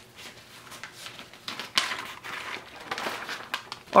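Sheets of paper rustling and crinkling as they are handled, in scattered soft rustles with a louder rustle about halfway through.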